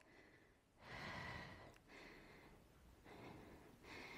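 Near silence with a few faint exhales of a woman's heavy breathing during exertion, about a second apart.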